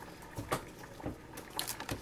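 Faint crinkling of a plastic noodle bag being handled, with a few brief rustles about half a second in and again near the end.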